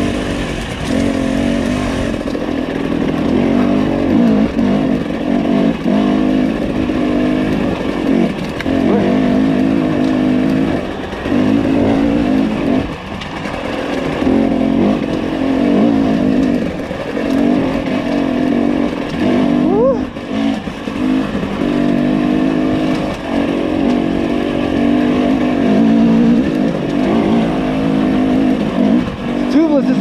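Husqvarna TE300i two-stroke single-cylinder enduro motorcycle being ridden on a muddy trail. Its engine pitch rises and falls as the throttle is opened and closed, with a brief rising rev about two-thirds of the way through.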